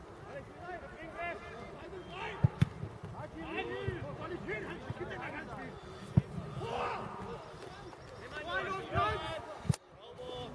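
Football players and spectators shouting on an open pitch, with the sharp thud of a football being kicked a few times: twice in quick succession about two and a half seconds in, once around six seconds, and once near the end.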